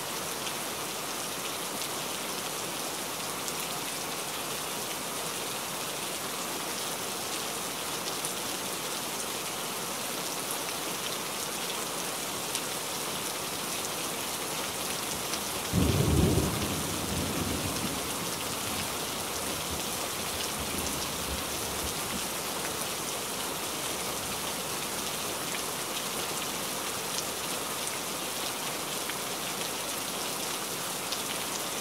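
Steady rain falling. About halfway through, a sudden low clap of thunder rumbles off over the next few seconds.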